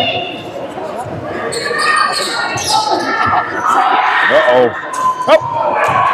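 Basketball game sounds on a gym floor: a ball being dribbled, with short squeaks of sneakers, over spectators' voices echoing in the hall.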